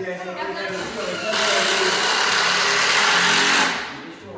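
A power tool runs for about two and a half seconds, starting a little over a second in and cutting off just before the end, with voices before it.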